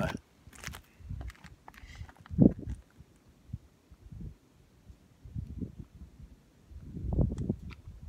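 Handling noise from an AR-style pistol being readied: irregular low thumps and rustling with a few light clicks, the heaviest thump about two and a half seconds in. No shots are fired.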